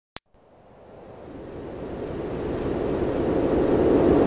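A short click, then a rushing noise like surf, with no pitch, that swells steadily from silence to loud: a noise build-up opening the dance mix.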